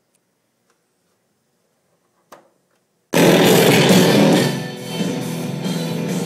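Near silence, a faint click about two seconds in, then music comes on suddenly and loud from the speakers of a Sharp GF-454 stereo radio cassette recorder, dropping a little in level about a second and a half later.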